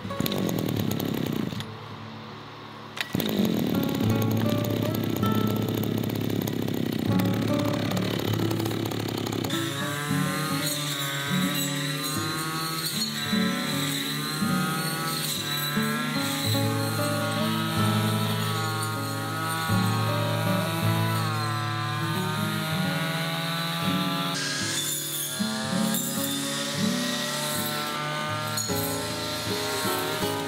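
Petrol brush cutter engine, loud from about three seconds in. From about ten seconds in its pitch rises and falls over and over as it is revved while cutting grass. Background music plays under it.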